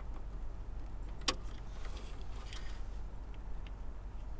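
Wire cutters snipping through the vehicle's green CAN-low wire: a single sharp snip about a second in, followed by a few faint clicks of handling the cut wire, over a steady low hum.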